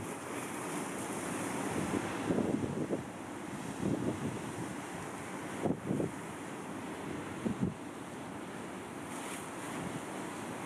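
Wind buffeting the microphone over a steady rush of sea surf, with a few short, louder gusts.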